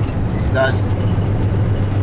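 Steady low drone of a minibus driving along a road, engine and road noise heard from inside the cabin, under one short word spoken into a microphone about half a second in.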